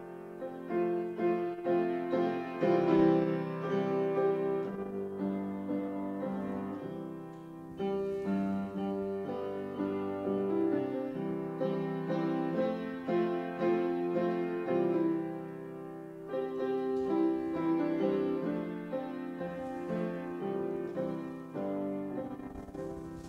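Solo grand piano playing a continuous instrumental piece, easing off softly twice between phrases.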